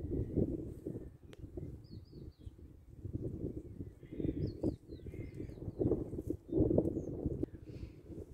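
Wind buffeting the microphone in uneven gusts, with a few short bird chirps about two and four to five seconds in.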